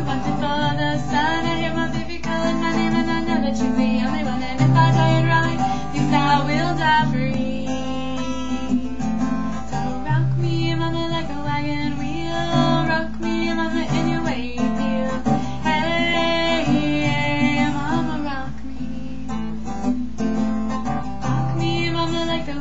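Acoustic guitar strummed in a steady rhythm, an instrumental break between sung verses of a country song.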